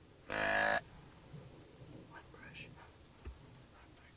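A single loud, deer-like bleat held on one pitch for about half a second, followed by faint whispering and a brief low thump near the end.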